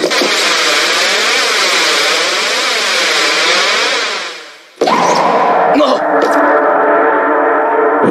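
Anime soundtrack: a swirling, wavering whoosh effect that fades out over about four and a half seconds, then a held dramatic music chord that comes in suddenly and sustains.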